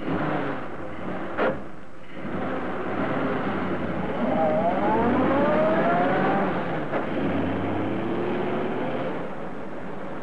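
Radio-drama sound effect of a car engine starting and pulling away, its pitch rising twice as the car gathers speed, as through a gear change. A short sharp sound comes about a second and a half in.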